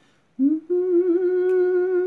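A woman humming: a short rising 'mm' about half a second in, then one steady note held for about a second and a half.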